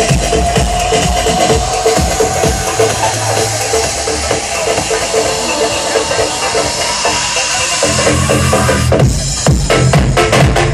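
Loud electronic dance music from a DJ set played over a stage sound system: a long build-up with a slowly rising synth tone, then a brief break about nine seconds in before the beat drops back in.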